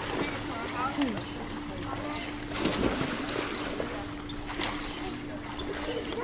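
Swimming-pool water sloshing and splashing lightly as people move in the water, over a steady low hum.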